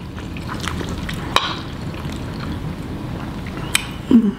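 Close-up wet chewing of a mouthful of ramen noodles, with two sharp clicks, one about a second and a half in and one near the end.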